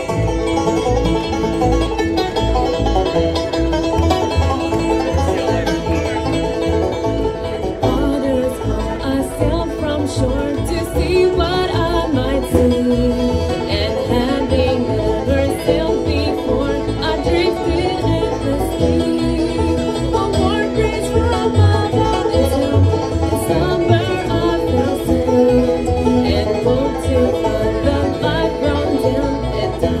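Live bluegrass band playing a song: banjo rolls, strummed acoustic guitar, fiddle and upright bass, with a woman singing lead.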